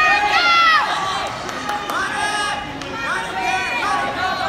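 Spectators and coaches shouting to the wrestlers, several voices overlapping, loudest in the first second.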